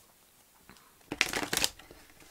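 Spirit Song Tarot cards being shuffled by hand: a quick run of crisp card clicks about a second in, lasting about half a second, with a few more clicks near the end.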